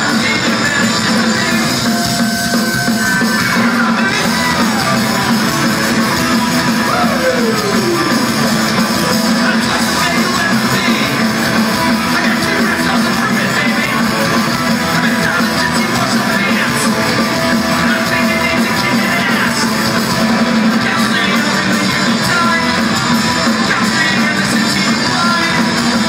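Punk rock band playing a song live, with electric guitars strumming over a steady full band sound. A falling slide in pitch comes about seven seconds in.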